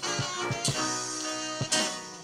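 A live gypsy-folk band playing: strummed acoustic guitars over bass and a drum beat, with held notes from other instruments above.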